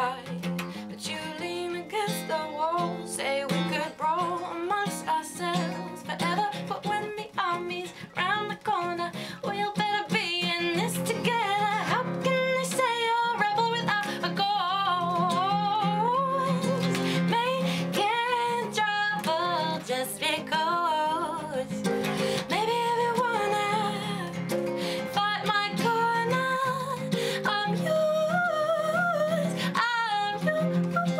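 A woman singing with a wavering melody line, accompanying herself on a strummed acoustic guitar. The playing gets fuller and louder about ten seconds in.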